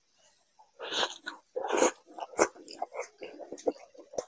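Close-miked wet chewing of a mouthful of spicy egg chicken curry and Mughlai paratha. There are two louder, noisier mouth sounds, about a second in and just before two seconds. After them come many short, sharp wet clicks of chewing.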